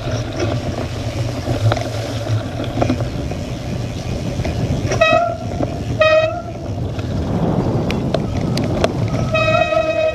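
Wind rushing over a bike-mounted action camera and knobby tyres rolling over wet, muddy grass during a cyclocross race. Two short horn toots come about five and six seconds in, and a held, horn-like tone begins near the end.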